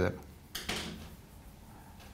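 Marker pen drawing on a whiteboard: one short scratchy stroke about half a second in, fading over about half a second.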